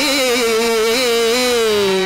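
A male voice singing a Telugu drama padyam in a Carnatic style, holding one long note with slight wavering that sinks a little in pitch and ends near the close.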